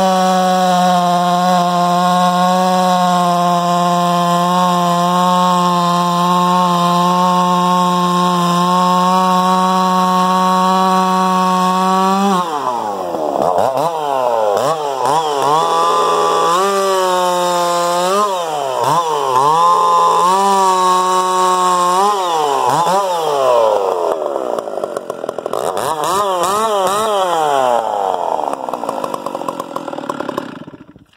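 MS650-type large two-stroke chainsaw held at a steady high pitch in a cut for about twelve seconds, then revved up and down repeatedly, the engine note swooping low and climbing back again many times.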